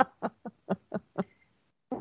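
A person laughing in a run of short, breathy chuckles, about four a second, tapering off after about a second.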